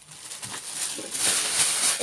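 Tissue paper rustling and crinkling as baby clothes are lifted out of it, growing louder from about half a second in.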